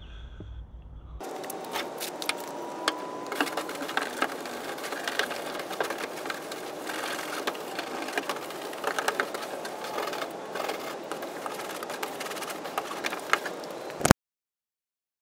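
Scrubbing and scraping inside a plastic IBC tote: a dense, irregular stream of scratches and knocks. It starts about a second in.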